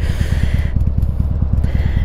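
A 2003 Harley-Davidson Sportster 883's air-cooled V-twin idling steadily, with an even, pulsing low rumble.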